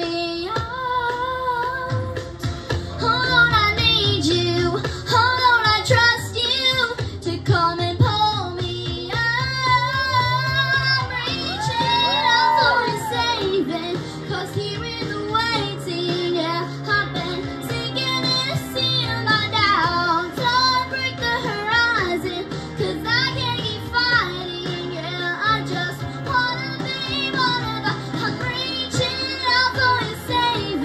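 A young girl singing a song into a microphone over musical accompaniment, with long held notes that waver in vibrato.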